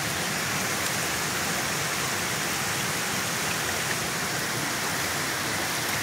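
Steady rush of fast-flowing floodwater, an even hiss with no breaks.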